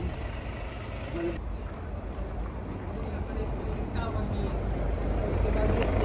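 A car driving past close by, its engine and tyres making a low rumble that grows louder toward the end as it draws near.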